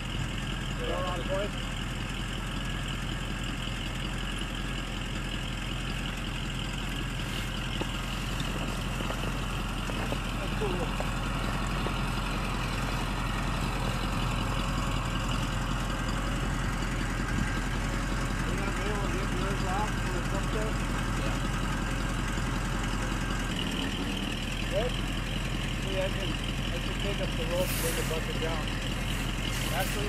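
Bucket truck's engine running steadily while its boom holds the bucket aloft, the note shifting about two-thirds of the way through.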